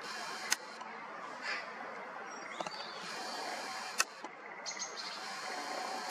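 Steady outdoor background hiss with a few faint bird chirps, broken by three sharp clicks: about half a second in, about four seconds in, and right at the end.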